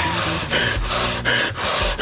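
A long hand screwdriver turning a three-inch screw into a wooden beam in repeated short twisting strokes, the last turns before the screw is driven fully home.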